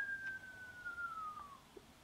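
A person whistling one long note that slides slowly down in pitch and fades out about one and a half seconds in.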